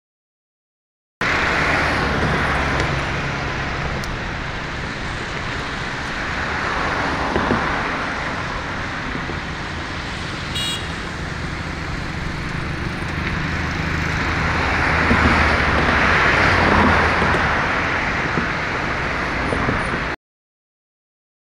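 Road traffic on a multi-lane highway: a steady rush of cars and motorbikes with a low engine rumble, swelling as vehicles pass. A brief high-pitched tone sounds about halfway through.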